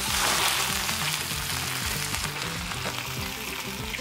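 Artichokes sizzling in a hot frying pan just after rum is poured in to flambé them: the sizzle starts loud and slowly dies down. Soft background music runs beneath.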